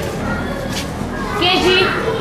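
Many young children chattering over one another, with one child's high-pitched voice standing out near the end.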